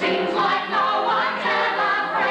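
Musical-theatre ensemble of men and women singing together in harmony, holding long notes with vibrato.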